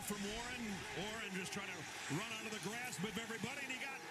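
Faint football TV broadcast audio: a play-by-play announcer calling the run, heard over a steady haze of stadium crowd noise.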